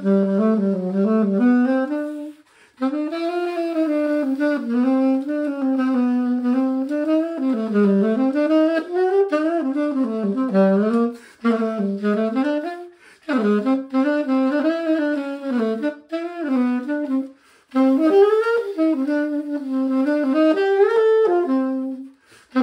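Conn 6M alto saxophone played solo: an unaccompanied melodic line with vibrato, in several phrases separated by short breaths.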